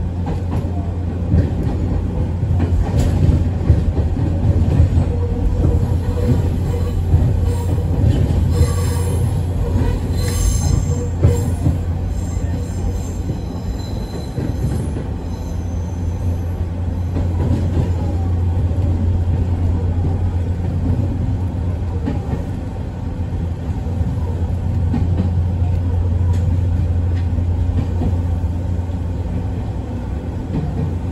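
Nankai 1000 series electric train running over curved track and pointwork, heard from just behind the front cab: a steady low rumble, with high-pitched wheel squeal on the curves from about eight to fifteen seconds in.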